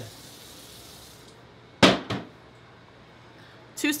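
Kitchen tap running as a faint hiss that cuts off about a second in, then two sharp clatters a third of a second apart as a ceramic plate is handled on the counter.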